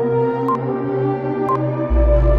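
Quiz countdown timer ticking once a second, twice here, each tick with a short beep, over ambient synth music with held notes. A deep bass note comes in near the end.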